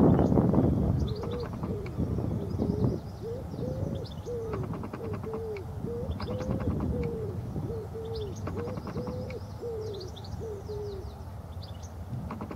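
A bird giving a long series of low, arched cooing notes, about two a second, with thin high twittering above that fits a European goldfinch. A loud rush of noise fills the first second.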